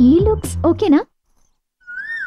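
A voice speaking for about a second, then a short silence and a brief high, rising-then-falling vocal cry near the end.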